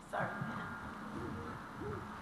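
Faint off-microphone voices talking in a large room, after a quick word close to the microphone at the start.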